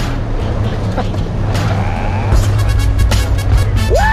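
Jeep engine running under load as it drives through a mud hole, with muddy water splashing up over the hood, under an instrumental music track.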